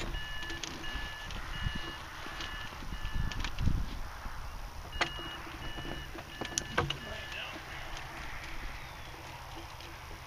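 Hang-gliding variometer sounding short, evenly spaced two-pitch beeps that come and go. A few sharp clicks sound about halfway through.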